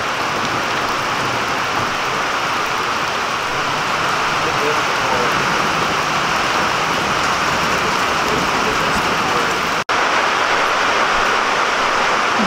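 Steady rain falling on waterlogged ground and puddles, an even rushing hiss with a brief dropout just before the end.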